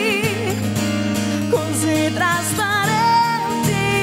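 Live music: a woman singing with vibrato and held notes, accompanied by two acoustic guitars.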